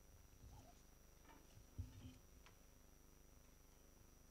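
Near silence: hall room tone with a low hum and a few faint knocks and rustles, the loudest a soft thump about two seconds in.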